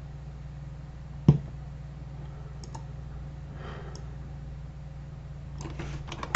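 A single sharp computer-mouse click about a second in, then a few faint clicks, over a steady low hum.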